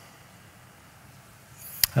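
Quiet room tone with a faint steady low hum through a pause in speech. Near the end a single sharp click and a breath come just before a man's voice starts.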